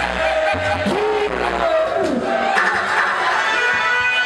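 Live reggae band playing, keyboards and bass, with a man's drawn-out vocal calls into the microphone gliding over the music.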